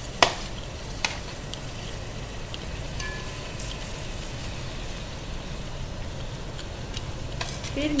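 Boiled rice being tipped from a bowl into an oiled aluminium pot and spread with a slotted spoon, over a steady hiss. A sharp knock of utensil on the pot about a quarter second in and a lighter one about a second in, with small scraping ticks after.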